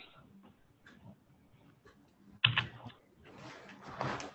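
A man clears his throat loudly once about two and a half seconds in, and a longer noisy throat-clearing starts near the end. Before that there is faint scattered clicking at a computer.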